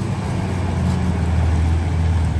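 Concrete mixer truck's diesel engine running with a steady low rumble.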